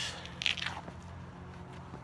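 A short breath drawn in through the mouth, with a few faint mouth clicks, over a steady low hum.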